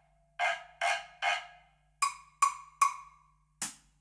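A wood block struck with a mallet: three even knocks, then a short pause and three more at a higher pitch.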